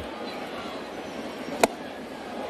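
Stadium crowd murmur, with one sharp pop late on as a 94 mph four-seam fastball lands in the catcher's mitt for a ball.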